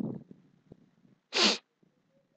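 A person sneezing once: a short, sharp burst about one and a half seconds in.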